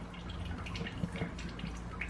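Faint clicks and rustles of a plastic water-filter cartridge being handled and seated in its housing, a few small clicks about a second in, over a steady low hum.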